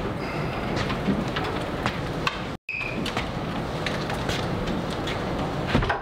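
A large wooden buffet being tipped over and stood on its end, with scattered knocks and creaks of the wood over a steady rushing noise.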